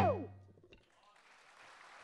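Final note of a Rajasthani folk ensemble's bhapang piece, sliding down in pitch and dying away within half a second. After a short silence, faint applause begins near the end.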